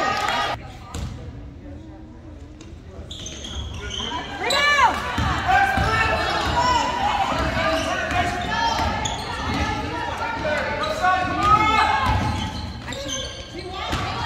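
A basketball dribbled on a hardwood gym floor during live play, with players and spectators calling out over it in an echoing gym. It gets busier and louder about four seconds in.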